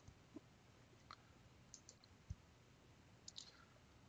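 Near silence with a few faint computer mouse clicks scattered through it, and one faint low thump about halfway.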